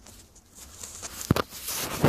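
Digging with a hand tool in soil: scraping and scooping, with a sharp knock about 1.3 s in and a louder scrape near the end.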